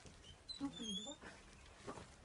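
A faint, brief voice sound with a wavering pitch, about half a second in.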